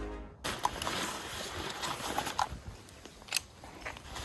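Background music stops abruptly about half a second in. What follows is quieter outdoor ambience with scattered sharp clicks, the loudest of them near the middle and towards the end.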